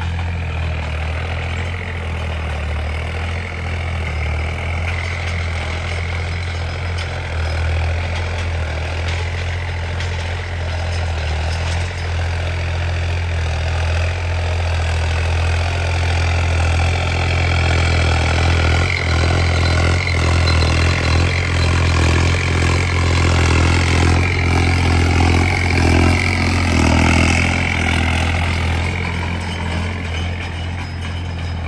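John Deere tractor's diesel engine running steadily under load as it pulls a tillage implement through dry soil. It grows louder in the second half as the tractor comes close.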